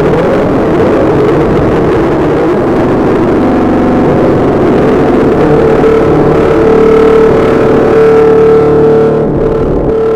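Loud, dense electronic music with a rumbling, engine-like drone; about halfway through a single high held note settles in over it and fades near the end.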